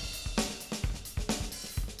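A recorded song with a full drum kit (snare, hi-hat, cymbals, bass drum) playing back through an audio interface's DSP graph, its left and right channels swapped by a cross-patch.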